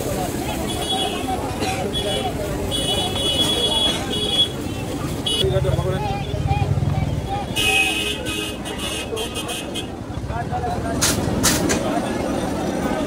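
Busy street traffic with vehicle horns sounding twice in long toots, under a steady din of background voices. A few sharp knocks come near the end.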